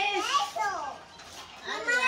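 Young children's excited, high-pitched voices: an exclamation at the start and another near the end, with no clear words.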